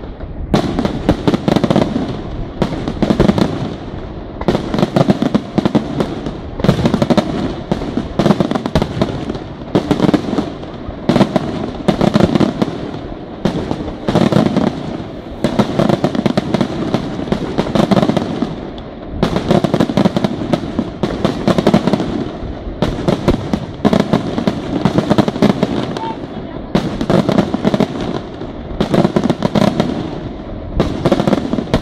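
Aerial firework shells bursting in a dense, continuous barrage, sharp reports coming several times a second without a break.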